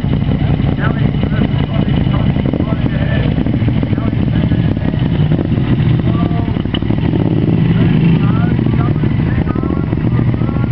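Two motorcycle engines running steadily at low revs as the bikes creep along at walking pace in a slow race. Onlookers' voices carry over them.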